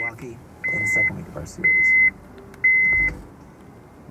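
2009 Honda Pilot's dashboard warning chime beeping with the ignition switched on and the engine off. It is a single high tone, each beep just under half a second long, repeating about once a second.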